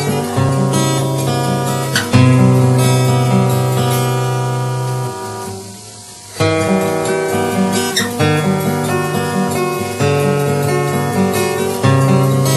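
Steel-string acoustic guitar played solo, chords picked over a repeating bass note. About five seconds in, a chord is left to ring and fade, then the playing picks up again with a strong attack.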